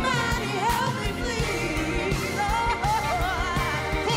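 Female vocalists singing soulful, melismatic lines with vibrato over a live funk band, with a steady drum beat and bass underneath.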